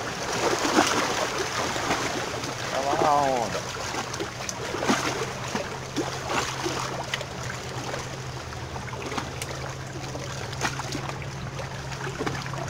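Water splashing and lapping at the edge of a rock, with scattered sharp clicks and a steady low hum underneath. A short voice sound comes about three seconds in.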